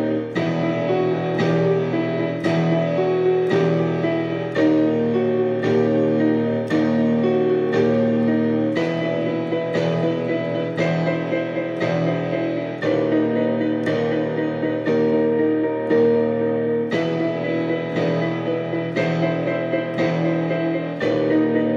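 Casio digital piano played with both hands in a dark horror piano piece: sustained low chords and notes struck about once a second in a slow, steady pulse.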